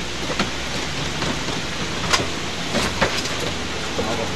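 A few scattered footsteps and light knocks of people walking across a balcony deck, over a steady hiss of outdoor background noise.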